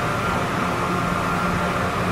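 Steady rushing noise of a crowded pedestrian tunnel, with a constant high hum over it like ventilation running.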